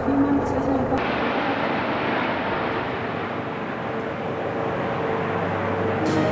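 Police Eurocopter EC135 helicopters flying past overhead, a steady rushing engine and rotor noise. About a second in, a held-tone sound cuts off abruptly, leaving the aircraft noise alone.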